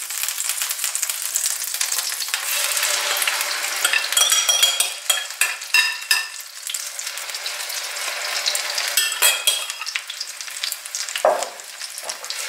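Butter and olive oil sizzling in a stainless-steel frying pan under a batter of soaked matzo, beaten egg and fried onion. A metal spoon spreading the batter scrapes against the pan several times, about four to six seconds in and again at about nine seconds.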